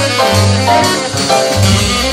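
Jazz film-score recording: a small jazz ensemble playing, with a bass line stepping from note to note under the other instruments.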